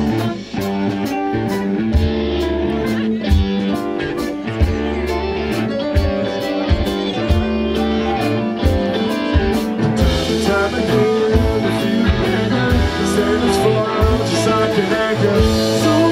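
Live rock band playing electric guitars, bass, keyboard and drum kit, with a steady drum beat under sustained guitar and keyboard notes.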